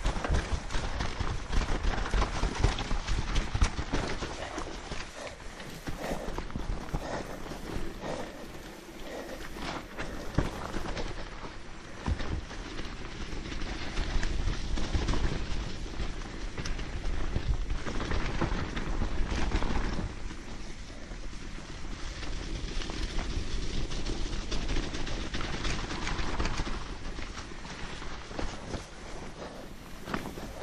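Mountain bike riding down a forest trail: tyres rolling over dead leaves, dirt and roots, with the bike rattling and knocking over the bumps throughout.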